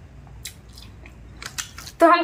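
A person eating by hand: soft chewing and mouth clicks, one sharp click about half a second in and a quick run of them near the end, over a faint low hum.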